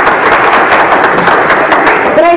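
Studio audience applauding: a dense, even run of many hand claps.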